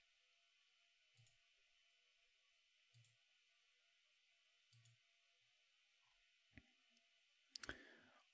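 Faint computer mouse clicks, about six of them spaced a second or two apart, each a quick press-and-release pair, over near silence.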